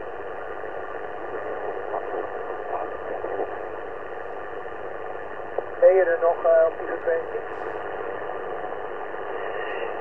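Shortwave transceiver's speaker giving steady band hiss on 40 m lower sideband, received on a loop-on-ground antenna with the preamp on. A faint, distant voice comes through the noise, strongest about six seconds in.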